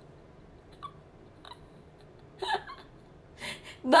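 Mostly quiet room tone, broken by a few short breathy vocal sounds from a woman, the clearest a brief catch of voice like a small laugh or hiccup about two and a half seconds in.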